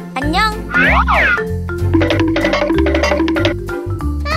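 Background music with cartoon-style sliding boing sound effects in the first second or so, sweeping up and down in pitch.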